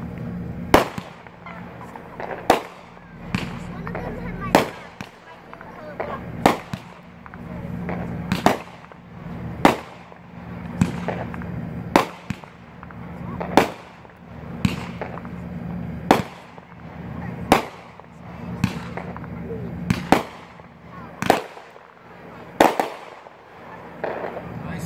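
Consumer firework cake firing one aerial shell after another, a sharp bang about every second and a bit, some eighteen in all.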